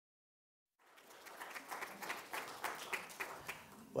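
Audience applauding: many hands clapping, starting about a second in and dying down near the end.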